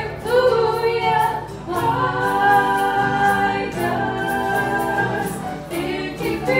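Women's voices singing together in harmony, holding long notes in phrases of a second or two, over strummed acoustic guitar and keyboard, played live.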